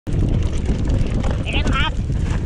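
Wind buffeting the action camera's microphone over the low rumble and rattle of a mountain bike rolling down a dirt singletrack. A brief wavering high-pitched sound comes near the end.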